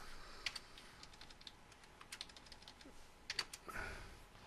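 Faint typing on a computer keyboard: irregular runs of quick key clicks as a phone number is keyed in.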